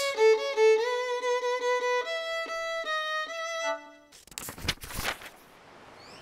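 Solo violin, bowed, playing a short phrase of separate held notes that steps upward and stops about four seconds in. A couple of brief swishing noises follow.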